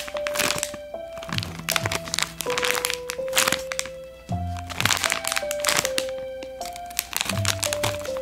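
Crinkly plastic film packaging of a squishy toy being handled and squeezed, giving irregular sharp crackles throughout, over background music playing a simple melody of held notes.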